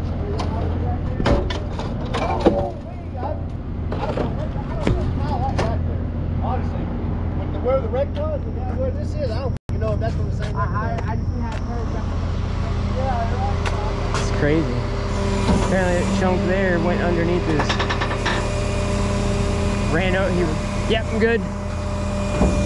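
Rollback tow truck's diesel engine idling steadily at the roadside, with a few sharp knocks and rattles in the first few seconds.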